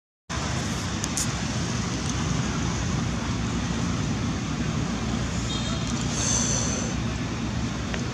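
Steady outdoor rumble of road traffic after a brief dropout at the cut, with a faint high tone about six seconds in.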